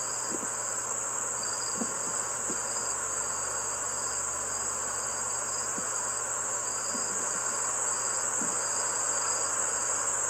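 Crickets chirping steadily: a constant high trill with a pulsing, repeated chirp above it.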